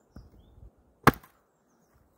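A Fiskars splitting axe striking a frozen birch round once, about a second in: a single sharp, loud crack, with a light knock of the axe against the wood at the start.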